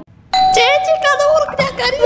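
A doorbell chime rings about a third of a second in, one steady tone held for about a second, with a voice speaking over it.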